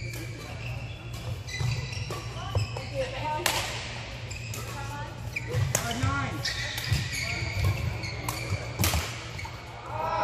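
Badminton rally: sharp racket hits on the shuttlecock a few seconds apart, mixed with short squeaks of court shoes on the floor.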